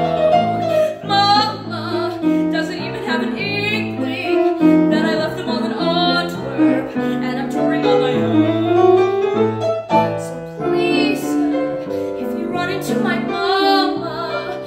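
A woman singing a show tune solo with grand piano accompaniment, her held notes wavering with vibrato over steady piano chords.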